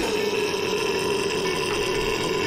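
Metalcore song playing: a sustained, held chord-like passage with the drums dropped out, one steady tone holding throughout.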